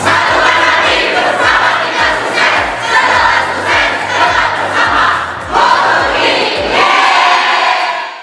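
A large crowd shouting a rhythmic chant in unison, with music and its beat still faintly underneath.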